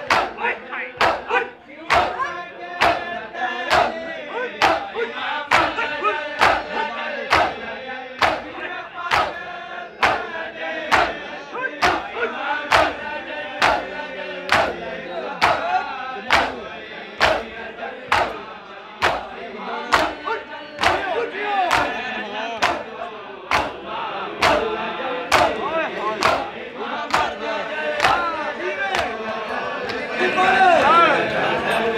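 A group of men beating their chests in unison in Shia matam, open palms slapping bare chests with a sharp, steady beat of just under two strikes a second. Their voices chant and call together along with the beat.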